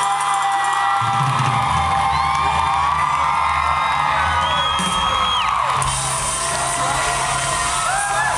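Live band music with a concert crowd cheering and whooping over it.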